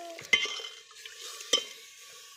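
A steel ladle stirring meat curry in a stainless-steel pot, knocking sharply against the metal twice about a second apart, over a low sizzle of the simmering curry.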